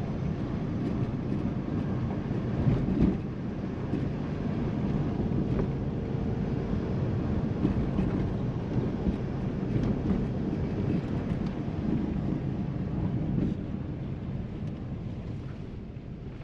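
Steady road and engine rumble heard inside a moving car's cabin, growing a little quieter near the end.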